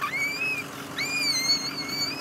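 An upset toddler crying: two shrill, wavering wails, a short one at the start and a longer one from about a second in. A faint steady low hum runs underneath.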